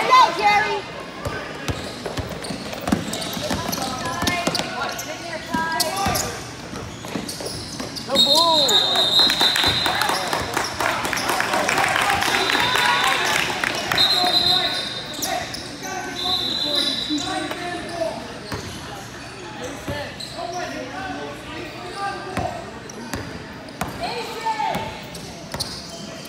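Basketball game in a large echoing hall: a ball bouncing and spectators talking and calling out. A referee's whistle sounds in several held blasts about a third of the way in, during the loudest stretch, as the voices rise.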